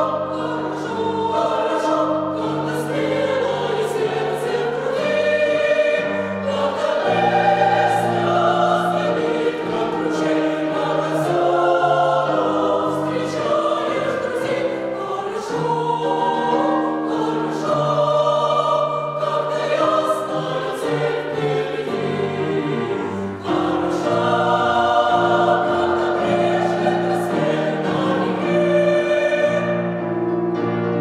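Mixed choir of women's and men's voices singing in harmony, holding chords that change every second or two, with a short break between phrases about three-quarters of the way through.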